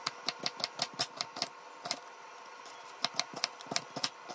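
Kitchen knife chopping quickly on a cutting board, about five strokes a second, in two short runs with a pause between.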